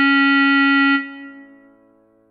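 Clarinet holding one long low note over a soft keyboard backing, cutting off about a second in and fading away into a rest.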